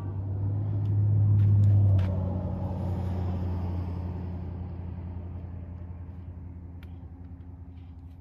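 Low motor-vehicle rumble that swells for about two seconds, drops off sharply, then fades slowly away.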